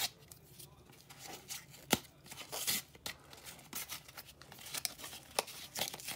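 Stiff plastic blister packaging being cut with scissors and torn open, the plastic crinkling, with sharp snips about two seconds in and again near the end.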